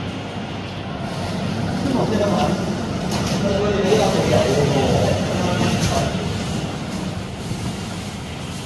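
Indistinct chatter of several people over a steady rumbling background noise that swells for a few seconds in the middle.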